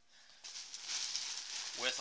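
Plastic trash compactor bag lining a backpack crinkling and rustling as a packed tarp is pushed down into it, starting about half a second in and running on as a steady crackle.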